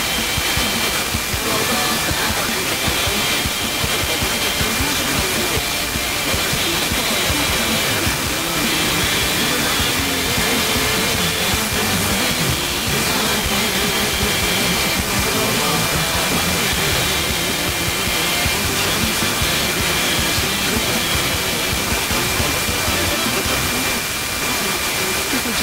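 A weak, long-distance FM broadcast station received on a car radio at 87.7 MHz: music comes through faintly under heavy static hiss, with a thin steady whistle tone over it.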